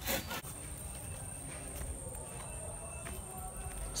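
A few quick knocks of a blade on bamboo, then a faint steady background with a thin high whine.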